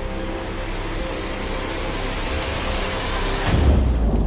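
Trailer-style sound design: a swelling rush of noise with a rising whistle over held music tones, building to a deep boom about three and a half seconds in.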